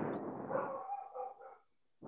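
A dog in the background giving a few short, high-pitched calls, fading out about a second and a half in.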